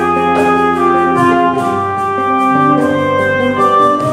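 Instrumental break in a live band performance: a clarinet-type woodwind plays a melody in held, stepping notes over bass guitar and band accompaniment.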